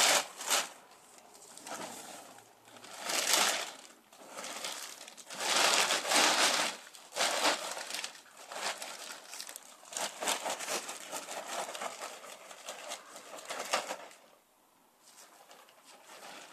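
Large clear plastic bag full of ground polystyrene foam beads being handled and lifted, the plastic crinkling and rustling in repeated bursts, loudest around three and six seconds in.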